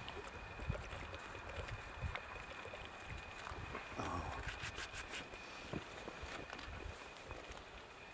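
Faint wind rumble on the microphone with scattered light crunching steps in snow, bunched about five to seven seconds in, over a thin steady high whine that stops near the end.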